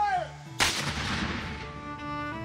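Civil War–style muzzle-loading field cannon fired once: a single sudden boom about half a second in, fading away over a second or so.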